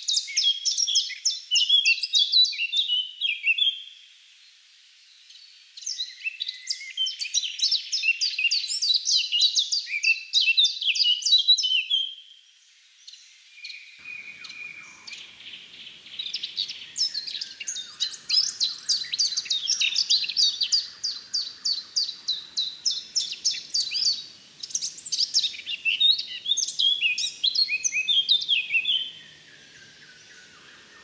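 A songbird singing in woodland: loud, high-pitched phrases of rapid repeated notes, each phrase lasting several seconds, separated by short pauses. A faint background rustle or hiss comes in about halfway through.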